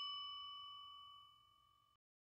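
The ring of a single bell-like ding sound effect, struck just before and fading away over the first second, leaving a faint lingering tone.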